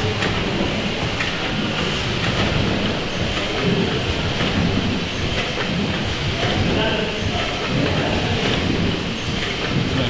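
Victorian steam pumping engine running steadily: a continuous mechanical clatter of its moving gear.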